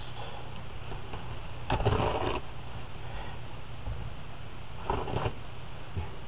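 Two short rustles of handling, one about two seconds in and a briefer one near the end, over a steady low hum.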